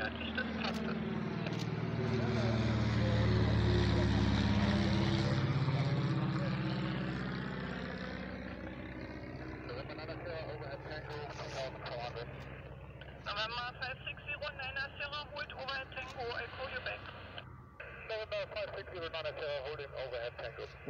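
Piston propeller aircraft of a formation flying low overhead on approach: an engine drone that swells to its loudest a few seconds in, drops in pitch as the aircraft pass over, and fades away by about eight seconds.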